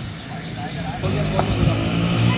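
A motor vehicle engine running steadily on the road, coming in about a second in, with players' voices in the background and a single sharp knock midway.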